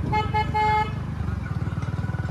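A vehicle horn gives three short beeps in the first second over the steady running of a Hero Splendor motorcycle's single-cylinder engine.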